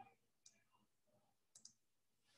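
Near silence, with a few faint short clicks: one at the start, one about half a second in, and a quick double click near the end.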